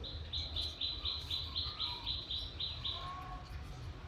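A small bird chirping a rapid series of about a dozen short, even high notes, roughly four a second, that stops about three seconds in.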